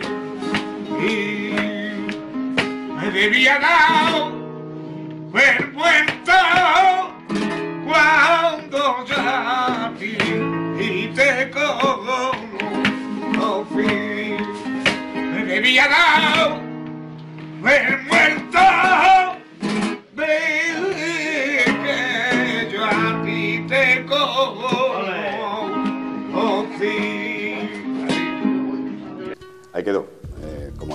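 A male flamenco singer singing cante in long, ornamented phrases that waver in pitch, over plucked flamenco guitar accompaniment.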